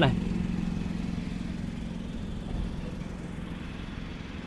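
A steady low engine hum at a constant pitch, as of a vehicle idling.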